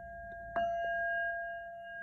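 Crown chakra Tibetan singing bowl, still ringing from an earlier strike, is struck gently again with a padded mallet about half a second in, then rings on in two steady tones.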